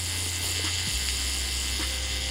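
Electric tattoo machine buzzing steadily as it works ink into skin, its low hum shifting slightly about a second in.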